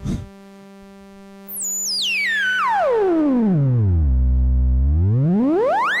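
Original ARP 2600 synthesizer's filter at full resonance, self-oscillating as its cutoff is swept by hand. A loud pitched tone starts about a second and a half in, glides down from very high to a deep bass, holds there for about a second, then glides back up to very high.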